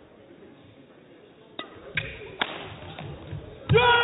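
Badminton rackets striking a shuttlecock in a rally: three quick, sharp hits, then a player's loud shout of "yeah!" near the end as he wins the point.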